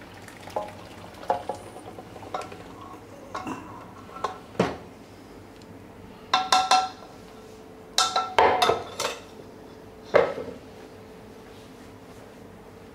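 Metal utensils clinking and knocking against cooking pots as mashed dal is poured into the curry: a scatter of short, sharp, ringing clinks, with quick clusters of strikes about six and eight seconds in.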